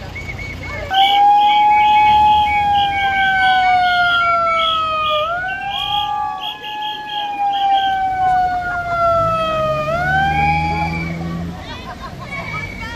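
A handheld megaphone's siren switches on abruptly about a second in and wails: a slow falling tone that sweeps quickly back up twice, with a rapid pulsing higher tone above it. Near the end a car engine runs low underneath.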